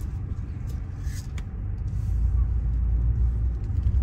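Car engine and road rumble heard from inside the cabin while driving slowly, growing louder about two seconds in.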